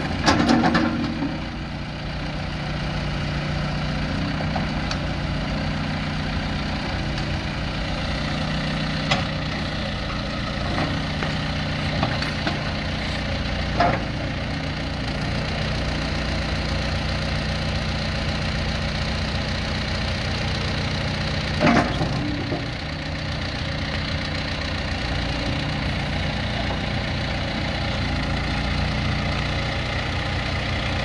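John Deere 410L backhoe loader's diesel engine running steadily while the backhoe boom is worked, with a few short knocks about 9, 14 and 22 seconds in.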